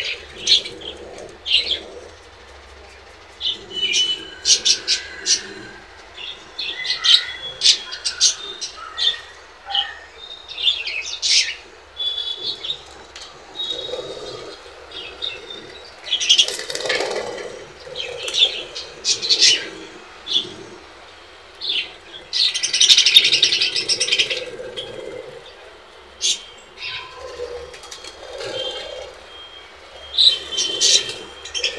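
Budgerigars chirping and chattering in quick, irregular short calls while they feed, with bursts of wing flapping as birds flutter up and land. About three-quarters through comes a busier two-second stretch of chatter.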